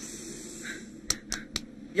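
Three sharp clicks in quick succession about a second in, over a faint background hiss.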